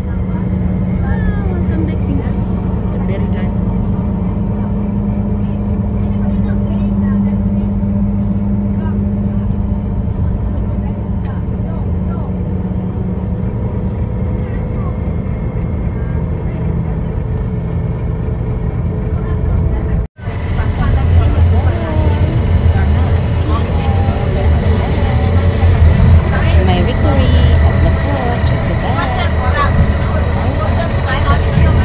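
Coach interior while driving: a steady engine and road drone. It cuts out for an instant about two-thirds in and comes back heavier in the low end. Faint voices of passengers are heard under it.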